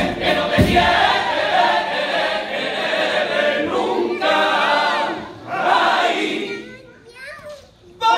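Men's carnival chorus singing a pasodoble in harmony with Spanish guitar accompaniment. The sung phrase dies away about seven seconds in, leaving a brief lull.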